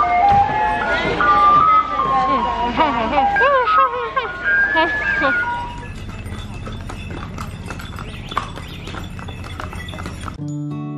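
Horses' hooves clip-clopping on stone paving, as irregular light knocks from about six seconds in, under faint music. The first half is voices and music, louder than the hooves.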